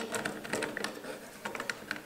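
Light metallic clicks and ticks, several a second, with a sharper click at the start, as the steel rear receiver cap of a Beretta Model 1937 rifle is pushed over the recoil spring and started on its threads.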